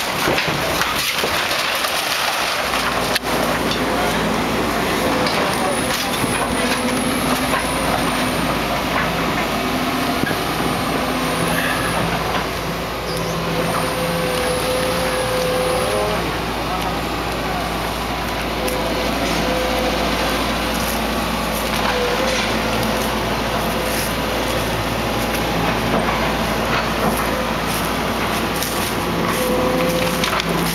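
Link-Belt 210 hydraulic excavator's diesel engine running under load as it tears apart a wood-frame house, with timber cracking and splintering. A few high squeals come in the first half, and the cracking grows more frequent in the second half.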